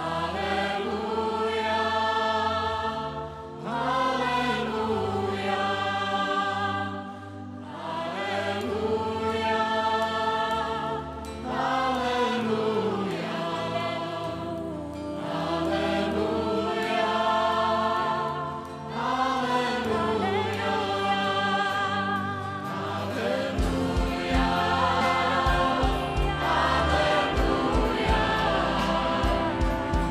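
Large mixed choir with solo voices singing a Czech worship song in long swelling phrases, each lasting about four seconds. A low pulsing beat joins in near the end.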